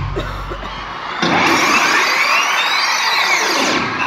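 Hip-hop backing music fades out, then a loud rushing whoosh with a sweeping, rising-then-falling sound cuts in about a second in and runs for about two and a half seconds. It is a transition sound effect over the arena PA.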